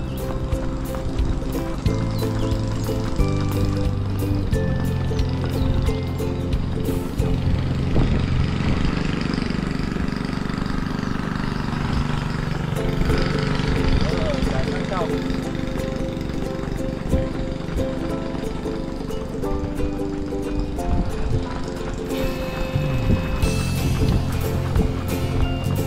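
Background music with held chords that change every second or two.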